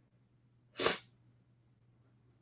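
A man's single short sneeze about a second in.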